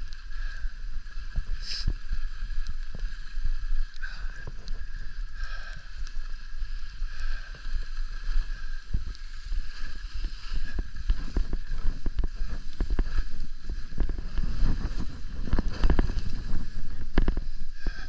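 Skis sliding and scraping over packed snow on a piste, with wind rumbling on the microphone. The scraping grows louder and rougher in the second half as the skis slow through churned snow.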